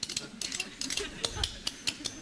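A pair of spoons played as a percussion instrument, clacked together in a quick, uneven rattle of about seven clicks a second.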